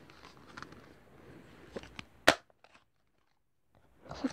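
Toy revolver handled with a few light clicks, then one sharp, loud snap a little past halfway as it is fired.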